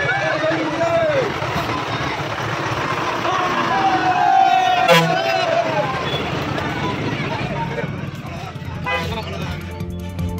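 A bus engine running as the bus pulls away, with a crowd of people shouting and talking close by. A long held tone sounds about four seconds in, and the sound fades near the end.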